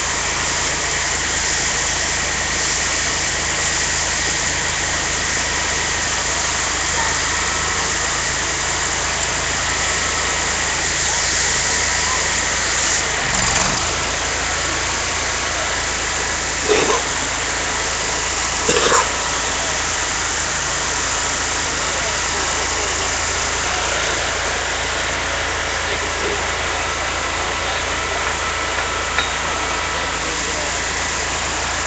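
Engine of a power-washing rig running steadily. Two short, louder sounds stand out a little past the middle.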